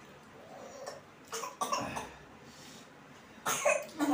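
A person coughing in two short bouts, about a second in and again near the end.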